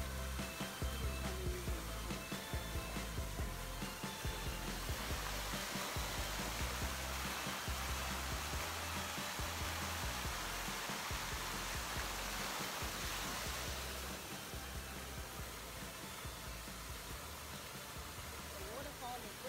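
Background music with a steady, repeating bass beat, mixed with the rushing spray of a water fountain that grows loudest through the middle.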